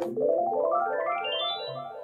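Synthesizer playing a fast rising run of notes up the keyboard, climbing steadily from low to high over about a second and a half, then stopping. It shows off the whole spread of the keyboard's range.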